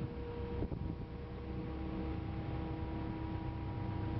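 Boat engine running steadily, a low hum with a few faint steady tones above it.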